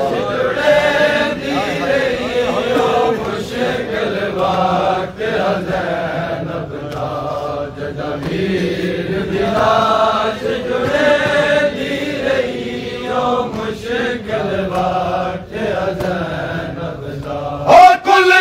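A crowd of men chanting a Punjabi noha lament together, the sung phrases rising and falling every second or two, with scattered sharp slaps of chest-beating (matam).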